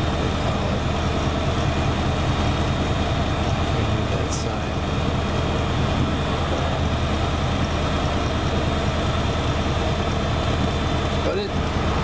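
A truck engine idling steadily, heard from inside the cab as a constant low hum.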